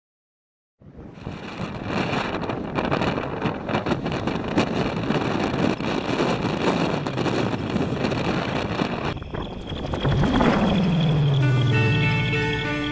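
Strong wind buffeting a camera microphone in a blizzard, a gusting rush that starts about a second in. About ten seconds in, music takes over.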